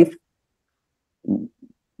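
A pause in a man's speech on a video call: the line drops to dead silence, broken once about a second and a quarter in by a short, low, muffled vocal murmur, a hesitation sound before he carries on talking.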